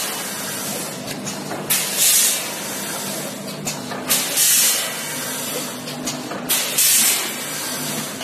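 Automatic vertical pouch packing machine with a multihead weigher running, a steady hum under it. Three loud hissing bursts come about two and a half seconds apart, each one per bag cycle and led by a click, typical of pneumatic valves venting air.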